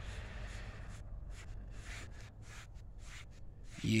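A foam applicator pad rubbing silicone tire dressing over plastic trim and a rubber tire: a quick run of soft, irregular wiping strokes, a few a second.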